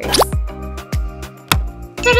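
Upbeat children's background music with a steady beat, with a short, quick rising slide sound effect just after the start.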